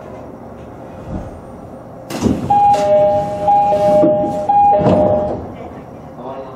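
JR 209-series electric train's door chime, a two-note high-then-low chime repeated three times, while the sliding passenger doors work with an air hiss and a thud.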